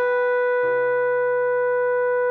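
A computer-played trombone sound holding one long, steady high note, tied over from the bar before, over a backing accompaniment. A lower chord enters underneath a little over half a second in.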